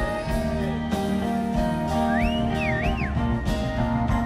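Live band playing an instrumental passage of a slow song. About two seconds in, a high whistle rises and falls twice over the music.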